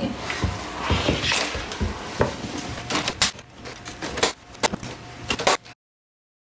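Plastic mesh netting being handled and laid back over a bed of dry moss: rustling and scraping with several sharp knocks and clacks, cutting off suddenly near the end.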